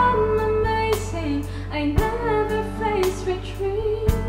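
Instrumental break of a minus-one backing track for a slow ballad: a steady bass, a drum hit about once a second and a melody line carried over them.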